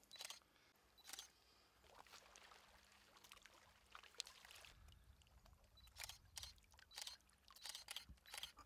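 Faint, irregular clicks of a single-lens reflex camera shutter firing several times, spread through the few seconds.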